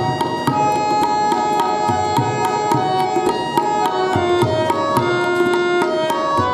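Yamuna harmonium playing a melody of held reed notes, accompanied by a tabla pair struck in a quick, steady rhythm.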